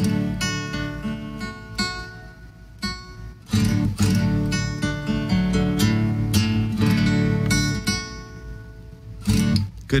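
Acoustic guitar chords strummed and left to ring, a quieter stretch near a third of the way in, then strumming again, as the guitar is checked with a makeshift capo made of a Sharpie and hair ties.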